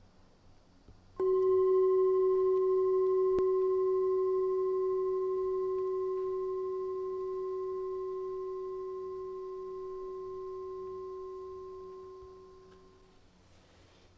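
A single bell-like tone, struck once about a second in, rings on one steady pitch with fainter higher overtones and fades slowly until it dies away near the end.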